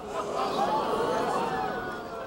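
Studio audience cheering and whooping, many voices at once, swelling just after the start and fading toward the end.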